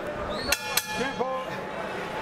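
Boxing ring bell struck twice, about a quarter second apart, each strike ringing on over steady crowd noise: the bell ending the round.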